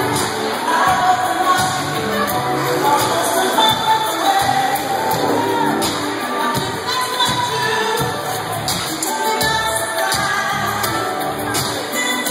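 Music with singing and a steady beat, played loud over a roller rink's sound system.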